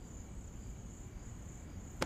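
Faint, steady high-pitched chirring of crickets: night-time ambience.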